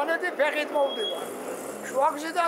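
An elderly man talking, with a faint low rumble of street traffic behind him in the second half.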